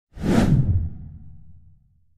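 Whoosh sound effect of a logo reveal: one sudden swoosh just after the start, followed by a deep tail that fades away over about a second and a half.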